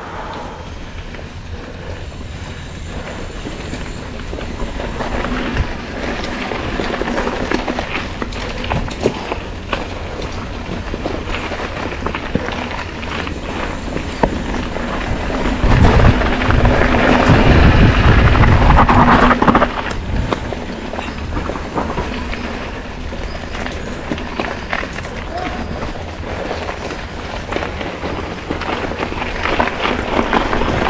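Mountain bike riding over a rough dirt trail, heard through an action camera's microphone: wind rumbling on the mic, with tyre noise and the bike rattling and clattering over bumps. The rumble grows loudest for a few seconds around the middle, then eases off.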